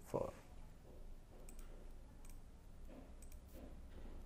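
A handful of light, sharp computer-mouse clicks spaced irregularly over a few seconds, over a faint steady low hum.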